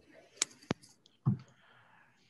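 Two short, sharp clicks about a quarter second apart, then a duller short knock a little after a second in, over a faint hiss on a video-call audio line.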